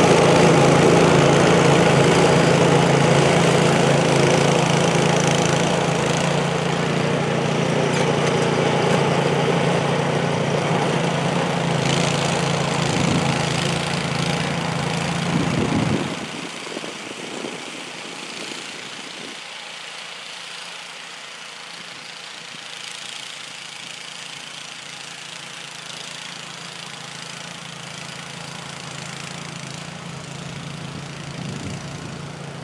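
Gas snowblower engine running steadily while it clears and throws snow, loud and close. About halfway through it drops suddenly to a much quieter, more distant running.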